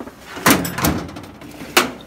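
Tool chest drawers sliding shut and open, with metal clunks and tools rattling inside: one clunk about half a second in, another just under a second in, and a sharp one near the end.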